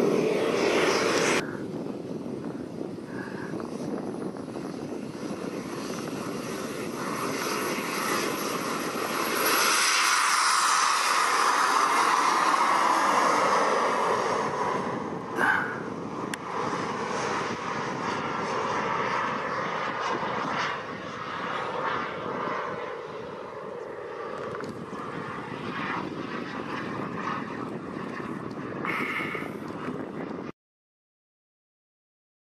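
JetCat 200 gas turbine of a BVM Ultra Bandit model jet, a steady turbine whine and rush as the jet takes off and flies around. It is loudest on a close pass about ten to fifteen seconds in, where the pitch falls as it goes by, with a brief sharp knock just after.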